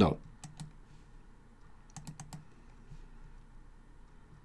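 Faint clicks from a computer mouse and keyboard: two clicks about half a second in, then a quick run of four about two seconds in.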